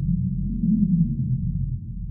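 Deep, low drone from a film trailer's sound design, swelling slightly around the middle and easing off near the end.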